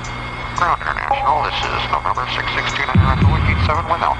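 Several overlapping voices calling and chattering, no clear words, over a steady electrical hum, with a deep thump about three seconds in.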